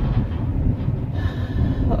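Low, steady rumble of a car's engine and road noise heard inside the cabin, with a faint steady high whine joining in about halfway through.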